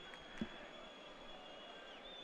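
Faint football-stadium crowd ambience, with thin high whistle-like tones held over it and a soft thud about half a second in.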